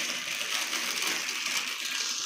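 Clear plastic packaging bag crinkling continuously as it is handled and opened around a new sink strainer coupling.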